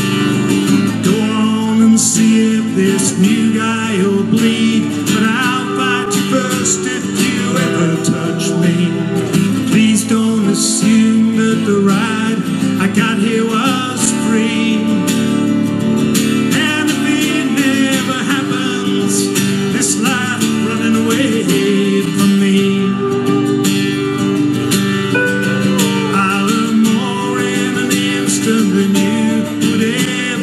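Live country music: a strummed acoustic guitar under a steel guitar playing a lead full of sliding, bending notes.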